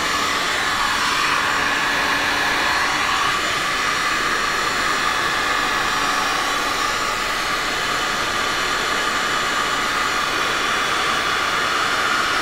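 Handheld heat gun blowing steadily over wet epoxy resin, a continuous rush of air with a faint steady whine. The hot air is being used to push the resin layer across the canvas and pop its air bubbles.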